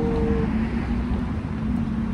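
Steady low rumble of road traffic with wind on the microphone, under a constant low hum.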